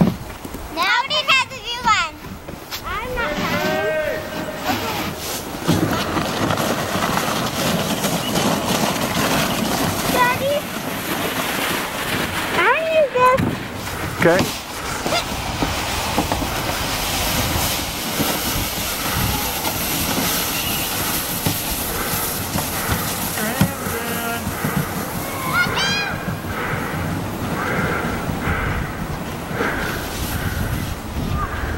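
Children's high-pitched shrieks and calls, in short bursts near the start, around the middle and near the end. A steady scraping hiss of sleds running over crusty, icy snow begins about six seconds in.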